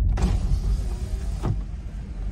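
A car's electric window motor runs for about a second and a half and then stops, likely lowering the window to order at a drive-through speaker. A low car-cabin rumble sits underneath.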